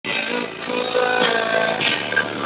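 Music played through a car audio system with four Sundown Audio ZV4 15-inch subwoofers, the subwoofers moving enough air to blow hair about.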